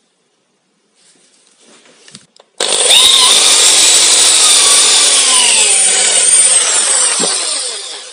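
Handheld electric drill boring out a stripped M6 threaded hole in metal with a thread-repair kit's drill bit, to open it up for a coil thread insert. It starts suddenly about two and a half seconds in, runs steadily with a whine over the noise of the bit cutting, and fades near the end.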